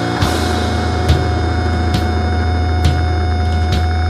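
Powerviolence band recording in a slow, heavy passage: distorted guitar and bass hold a low droning chord with a steady high tone ringing above it. Drum hits land about once a second.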